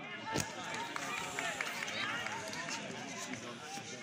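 Several voices at a football match calling out and talking over one another, with one sharp knock about half a second in.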